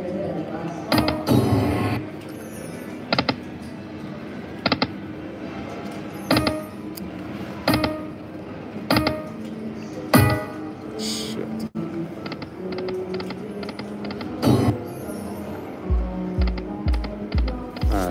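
Video slot machine spinning its reels again and again, each spin marked by a sharp click and short electronic chimes, over casino background music and chatter. Steady low thumps, about three a second, come in near the end.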